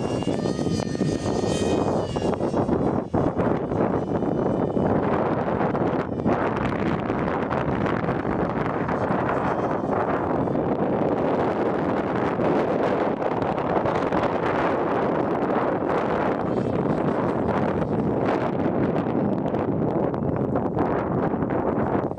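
Small 50 mm electric ducted-fan RC jet in flight. Its high whine shifts slightly in pitch in the first two seconds as it passes, then gives way to a steady rushing noise for the rest of the flight.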